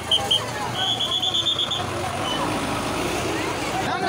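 Outdoor crowd of people talking over road noise, with a run of short high-pitched beeps in the first two seconds, quick ones in a rapid string.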